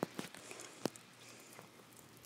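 Camera handling noise: a few faint, sharp clicks and knocks, the clearest ones at the start and just under a second in, over faint outdoor hiss.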